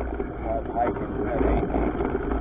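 A mountain bike rolling along a dirt singletrack trail: wind buffeting the camera microphone, with tyre and frame rattle, as a steady rumbling noise.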